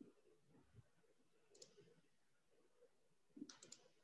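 Near silence, broken by a few faint, short clicks: one about a second and a half in and a quick cluster near the end.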